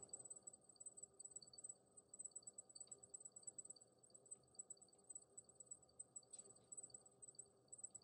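Near silence: room tone with a faint, steady, high-pitched pulsing trill throughout.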